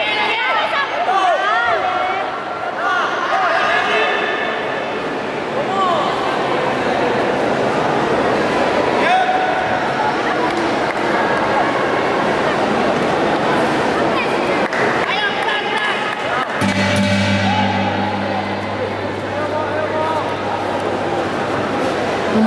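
Several voices shouting and calling out across a large indoor sports hall, densest in the first few seconds. A steady low hum comes in about three-quarters of the way through and holds to near the end.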